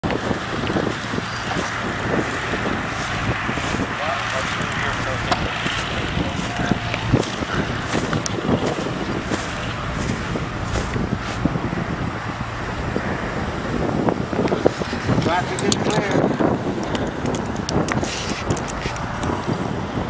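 Wind buffeting the microphone over the steady low hum of a light aircraft engine idling, with faint voices.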